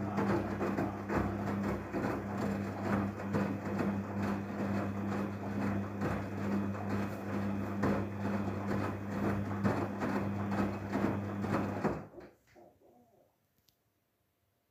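Daewoo front-loading washing machine mid-wash: the drum turns the wet laundry with water sloshing and splashing over a steady low hum. The sound stops abruptly about twelve seconds in, as the drum pauses in the cycle.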